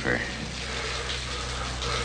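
Water rushing steadily from a valve just opened by its hand-wheel, over a low steady hum.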